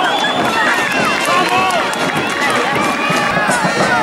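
Football crowd shouting and calling out, many voices overlapping without any single clear speaker.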